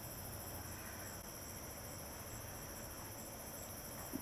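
Steady night chorus of crickets and other insects: a faint, high, even trilling with a light pulsing.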